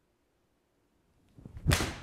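A Mizuno MP-20 HMB forged 7-iron swung at a golf ball off a hitting mat: a rising swish of the downswing about a second and a half in, then a sharp crack of the clubface striking the ball, a solidly struck shot.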